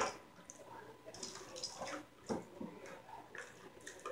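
Faint handling noises: a few soft taps and rustles as plastic wrestling action figures are moved by hand on a toy ring.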